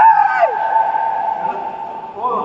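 A man's loud, triumphant yell celebrating a won point: one long held shout that starts suddenly, dips in pitch about half a second in, then carries on steady and fades.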